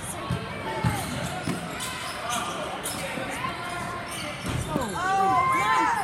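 Live basketball play on a hardwood court: the ball bouncing, with sneakers squeaking on the floor in several short chirps near the end, over voices from players and spectators.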